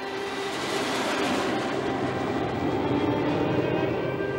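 A loud, steady rushing roar like a passing vehicle, swelling about a second in, with faint film music underneath.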